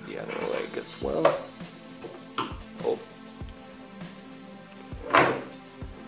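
Background music over a few sudden knocks, clicks and scrapes from a Hama Star 05 tripod's plastic tilt head being handled and adjusted; the loudest clunk comes about five seconds in.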